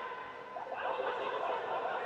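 Distant shouts and calls from footballers on the pitch, echoing in a large indoor hall.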